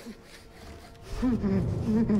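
A man mumbling, starting about a second in, his voice pitched and wavering, over a quiet held music score.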